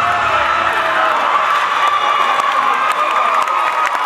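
Crowd cheering and screaming, many high-pitched voices shouting together.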